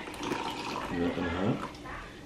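Liquid being poured into a small cup, under quiet background speech.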